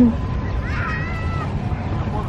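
Steady low rumble of wind and small waves at the shoreline, with one short high-pitched call, rising then held, a little over half a second in.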